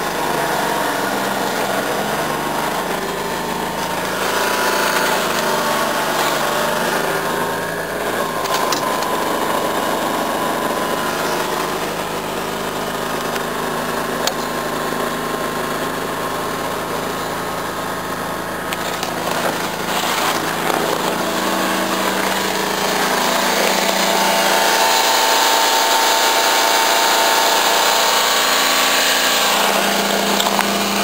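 Daihatsu Hijet mini truck's 660cc three-cylinder engine running steadily while warming up after a cold start in deep frost, with a few light clicks. Near the end it gets louder and brighter.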